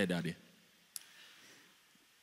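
A man's voice trails off, then a single short click about a second in, over quiet room tone.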